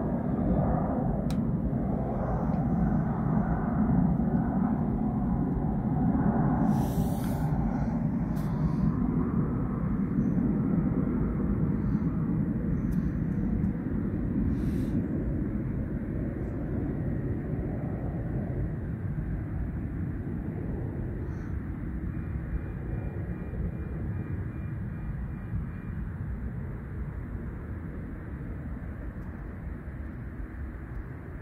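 Airplane passing overhead: a steady low rumble that slowly grows fainter.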